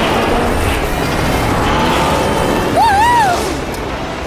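Cartoon soundtrack of music over the rumble of animated vehicles moving, with a short wavering pitched call about three seconds in.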